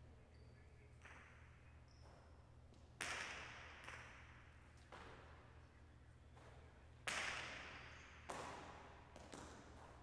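Jai alai ball (pelota) cracking against the fronton walls and floor during a rally, about six sharp hits with a ringing echo after each; the loudest two are about four seconds apart.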